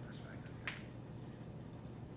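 A single sharp click about two-thirds of a second in, over a steady low room hum.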